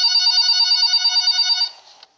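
Telephone ringing with a rapid warbling trill, held for under two seconds before it stops.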